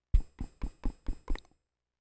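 A run of six quick, evenly spaced knocks, about four a second, like a clock ticking.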